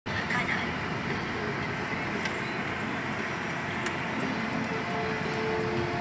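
Car driving slowly, heard from inside the cabin: a steady hum of engine and tyre noise, with a couple of faint clicks.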